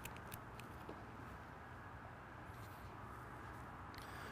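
Quiet shop background hum with a few faint light clicks near the start and about a second in, as the coolant machine's service hose and wand are handled at the radiator.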